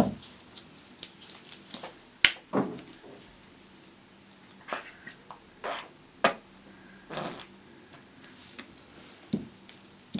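Plastic acrylic paint bottles being handled on a table: scattered light clicks and knocks of caps and bottles, with a few brief soft rustles as paint is squeezed out into a plastic tray.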